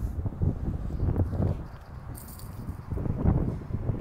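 Irregular low rumbling of wind buffeting and handling noise on a handheld phone's microphone, rising and falling unevenly.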